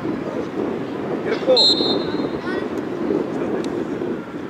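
Shouts of voices at a youth football match over a steady rush of wind on the microphone, with a short, high whistle blast about a second and a half in.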